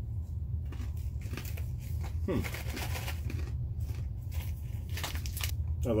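Crunchy roasted corn nuts being chewed, with sharp crunches and crinkling of a ration packet, over a steady low hum.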